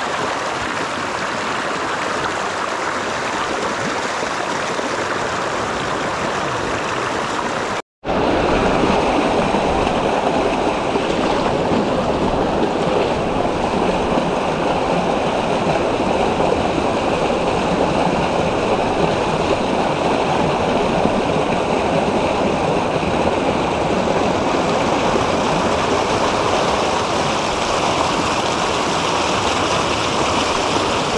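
Creek water rushing and splashing over a small rock cascade, a steady close-up rush. It drops out for an instant about eight seconds in and comes back louder and fuller.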